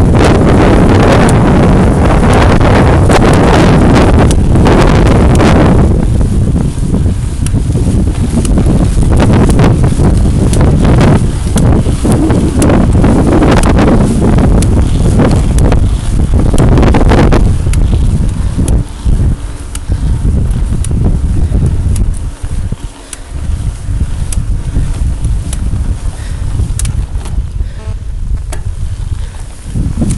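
Wind buffeting the microphone of a camera on a moving mountain bike: a loud, rumbling rush with no tones, strongest in the first half and easing somewhat with brief dips in the second half.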